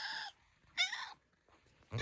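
Domestic tabby cat meowing twice, short high calls: one trailing off at the start and another about a second in.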